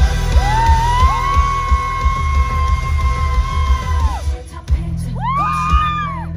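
Live pop-rock band sound-checking through a large outdoor PA: drums and bass under a long, high, wordless vocal note that glides up and is held about four seconds, then a shorter note that rises and falls near the end.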